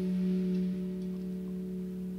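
One sustained note from an amplified electric string instrument, held and ringing steadily with its overtones and slowly fading.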